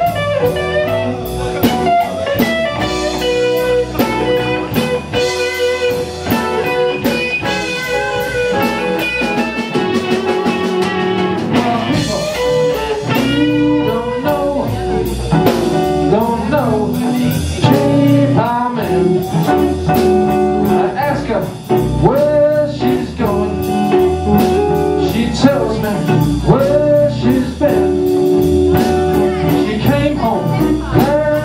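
Live blues band playing: electric guitar lead lines with bent notes over bass guitar and drums.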